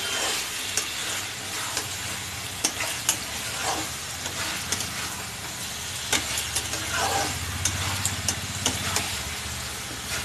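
Paneer cubes frying in masala in a kadai, sizzling steadily while a spatula stirs them and scrapes and clicks against the pan. A low steady hum runs underneath.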